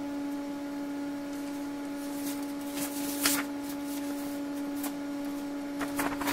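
Steady electrical hum, one pitch near 300 Hz with its overtones, from running bench test equipment; a few soft paper rustles as a printed sheet is handled.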